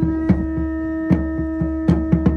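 A steady electronic drone with a low hum beneath it, over irregular, sharp drum beats.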